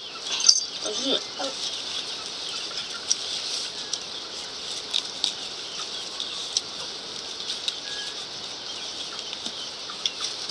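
Dry maize husks rustling and crackling, with sharp clicks, as dried corn cobs are husked by hand over a steady high hiss. A child's voice is heard briefly about a second in.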